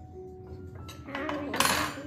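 Table knife and fork scraping and clinking on a ceramic plate while a small child cuts a pancake, building from about a second in to a loud, harsh scrape near the end. Soft background music underneath.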